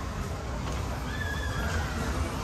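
Látigo whip fairground ride running: a steady low rumble of the cars rolling over the platform, with a faint high drawn-out squeal about a second in.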